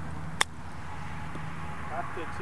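Golf chip shot: a wedge's clubface strikes the ball once, a single short sharp click about half a second in, over a steady low hum.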